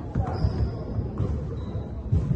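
Basketball bouncing repeatedly on a hardwood gym floor, the thumps echoing in the large hall, with two brief high-pitched squeaks, about a third of a second in and near the end.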